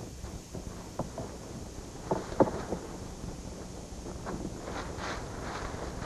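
Dry old straw rustling and crackling as it is carried and tossed by hand onto a compost heap, with a few short knocks in the first half and denser rustling in the second half.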